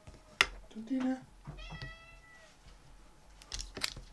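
Small bar magnets clicking down onto a magnetic stamping platform, one sharp click about half a second in and a few lighter clicks near the end. A drawn-out pitched call, a little under a second long, sounds in the middle.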